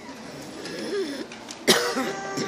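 A single loud cough close to the microphone about three-quarters of the way through, over a faint murmur of audience voices.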